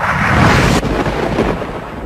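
A thunder-like rumbling whoosh sound effect that is loudest in the first second and then dies away into a low rumble.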